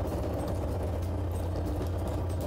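Steady low drone of a fishing vessel's engine machinery running, even in level throughout.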